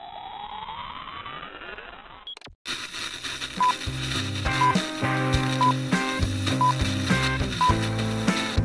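Intro sound effects: a rising electronic sweep for about two seconds, a brief break, then music with a steady beat, over which a short high countdown beep sounds once a second.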